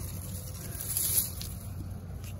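Leafy garden plants rustling as a hand brushes through and grabs at their stems, over a steady low hum.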